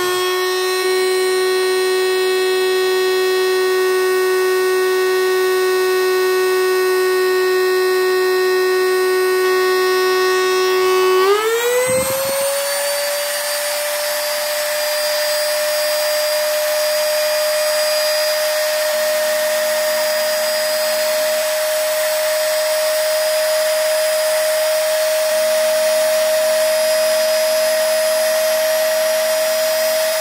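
A rotary multitool's motor spins a small grinding stone freely with a steady high whine. The pitch steps up slightly right at the start, holds, then rises about eleven seconds in to a higher steady whine as the tool reaches its top speed of about 38,000 rpm.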